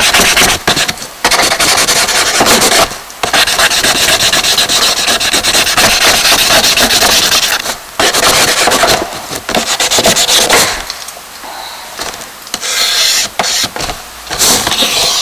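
Charcoal and fingertips rubbing and scratching on a sketchbook page of newspaper collage, as the drawing is drawn in and blended. Long scratchy strokes are broken by brief pauses, with a quieter spell about eleven seconds in.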